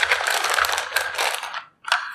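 Clear plastic bag crinkling and rustling as it is opened and handled, stopping briefly near the end.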